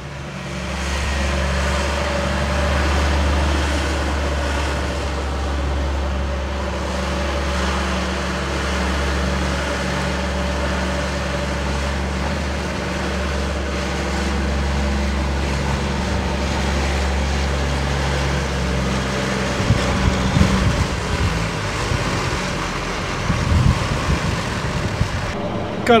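A large diesel engine running steadily, a low hum with a faint higher tone above it, which changes and turns rougher about twenty seconds in.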